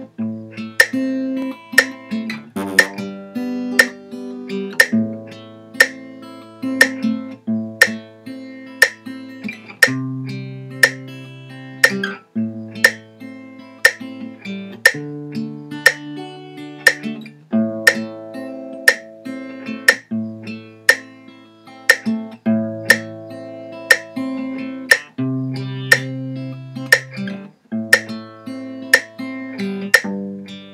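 Acoustic guitar fingerpicked in a steady, even pattern, about two sharp plucks a second over ringing bass notes, the chord changing every couple of seconds.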